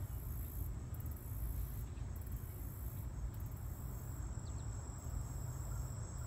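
Insects, crickets, trilling in one steady high-pitched drone, over a low, fluctuating rumble of wind on the microphone.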